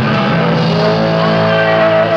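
Live hard-rock band playing, with distorted electric guitar holding long sustained notes that ring on from about half a second in.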